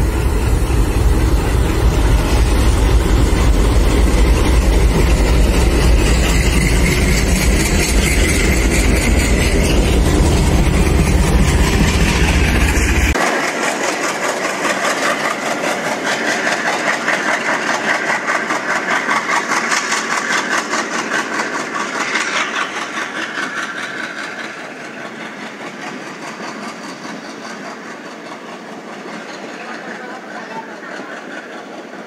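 Twin WDG3A ALCO-design diesel locomotives running past close by with a heavy engine rumble. About 13 seconds in the rumble cuts off abruptly, and passenger coaches roll past with a rapid clatter of wheels on rail joints that slowly fades.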